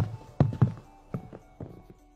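Footsteps of two people walking on a snowy path, a run of soft thumps that fade away, over quiet background music.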